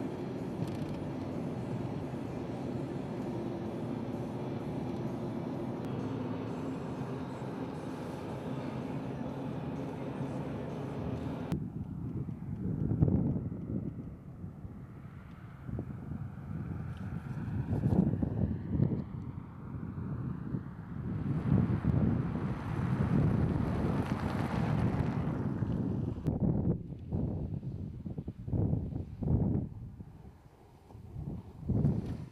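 Steady engine and tyre noise heard inside a moving car. After a cut, vehicles drive past outside, the sound swelling and fading as they go by.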